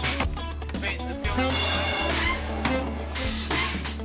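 Indie pop band music with drums, guitar and a voice over it.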